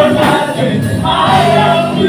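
A live worship band: several singers singing together into microphones over amplified drums, bass guitar and keyboard, in an upbeat gospel praise song.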